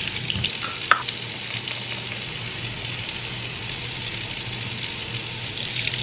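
Kitchen faucet running steadily into a stainless steel sink, the stream splashing as makeup brushes are rinsed under it, with one short click about a second in.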